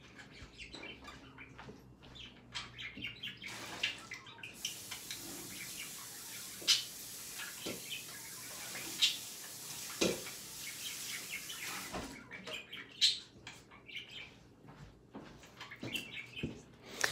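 Sink tap running as a stainless steel mixing bowl is rinsed out, with a few knocks of the bowl against the sink. The water comes on about four seconds in and shuts off about twelve seconds in.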